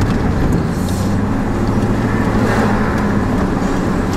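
Steady low drone of a car heard from inside its cabin while driving: engine hum with road noise.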